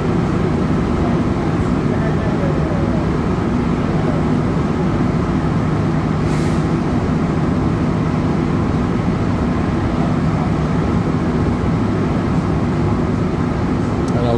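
Rubber-tyred Montreal Metro train running at speed through a tunnel, heard from inside the car: a steady rumble with a low hum, and a brief hiss about halfway through.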